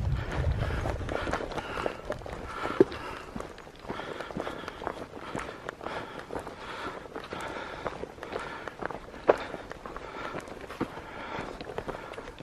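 Footsteps of a hiker walking briskly along a dirt forest trail with dry leaf litter, a steady uneven crunch of steps, with a low rumble near the start.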